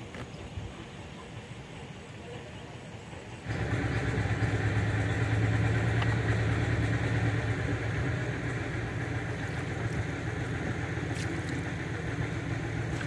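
An engine starts running abruptly about three and a half seconds in and keeps going with a steady low hum.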